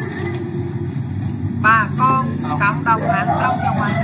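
A steady low engine hum, with high-pitched voices crying out in a string of short rising-and-falling calls starting about a second and a half in.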